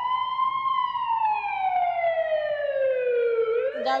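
Ambulance siren wailing: its pitch peaks about half a second in, falls slowly for about three seconds, then starts to climb again near the end.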